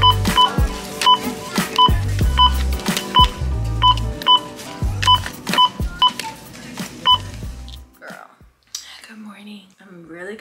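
Self-checkout barcode scanner beeping again and again as items are passed over it, short two-tone beeps at irregular intervals of roughly half a second to a second, over background music with a heavy bass beat. The music cuts off about eight seconds in, and a woman starts talking.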